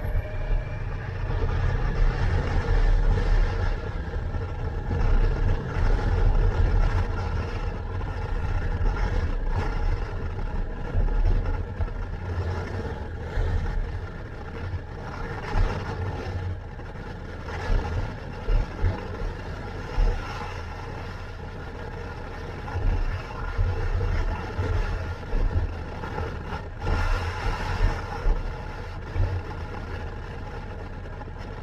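Kawasaki motorcycle engine running under way along a road, heard from a helmet-mounted microphone, with heavy, uneven wind rumble over it.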